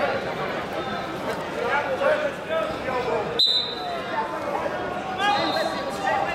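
Indistinct shouting and voices from coaches and onlookers at a wrestling bout, with thuds of the wrestlers on the mat and one sharp smack about three and a half seconds in.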